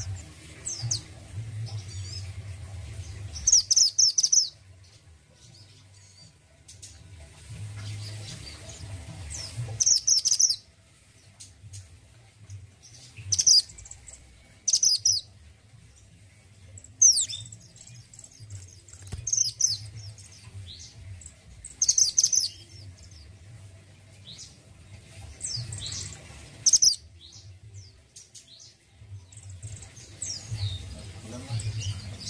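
A caged male minivet (mantenan gunung, orange form) giving short, high, rapid chirping phrases in bursts every few seconds, with a faint low hum underneath.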